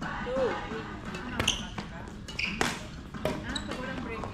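Badminton rackets striking a shuttlecock in a rally: a few sharp hits, the loudest about a second and a half and two and a half seconds in. A player's voice is heard just at the start.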